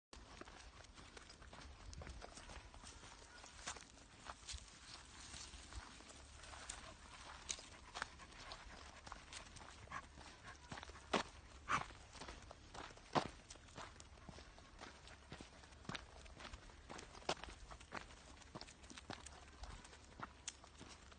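Footsteps on a dirt path: irregular scuffing steps and small clicks, with a few sharper clicks a little past halfway.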